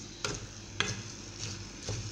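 Wooden spoon stirring rice and diced vegetables sautéing in oil in a metal pot, with a low sizzle under it and three sharp scrapes of the spoon against the pot.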